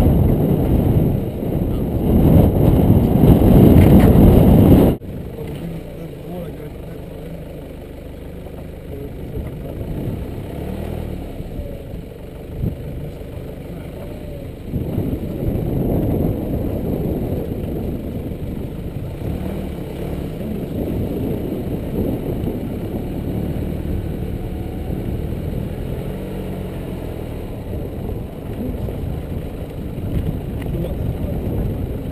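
Nissan Navara D22 4WD's engine running as the vehicle crawls slowly along a rough dirt track, heard from outside on the bonnet. Wind buffets the microphone loudly for the first five seconds, then cuts off suddenly, leaving the steady engine, which gets a little louder about halfway through.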